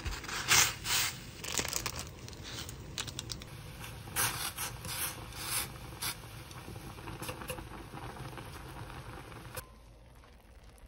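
Water at a rolling boil in a stainless-steel saucepan, with a block of dried instant noodles dropped in near the start, setting off a burst of crackling. Around the middle, wooden chopsticks stir and scrape through the softening noodles in the bubbling water; the sound cuts off just before the end.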